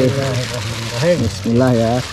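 Water pouring and sloshing as a plastic bag of koi fry is tipped out into an earthen pond, under people's voices.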